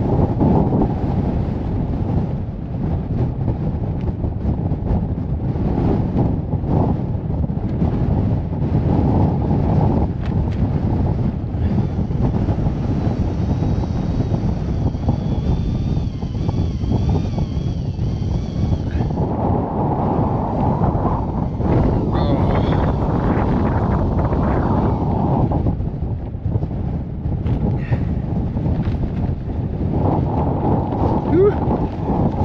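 Strong gusting wind battering the microphone, a heavy low rumble that surges and eases with gusts of about 25 mph.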